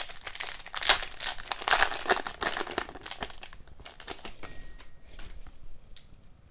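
Foil wrapper of an Upper Deck hockey card pack crinkling as it is pulled open and the cards are slid out. The crinkling is loudest in the first few seconds, then thins to light rustles.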